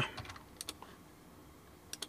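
A few light, scattered clicks of computer keyboard keys, the sharpest near the end, over faint room tone.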